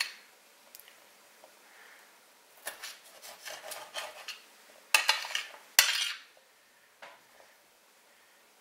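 Kitchen knife cutting an orange bell pepper into strips on a cutting board: short clusters of quick knife taps, with two louder strokes about five and six seconds in.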